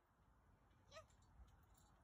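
Near silence, with one faint, brief call that rises and falls in pitch about a second in.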